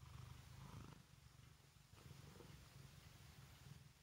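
A domestic cat purring, faint, a low rhythmic rumble that weakens near the end.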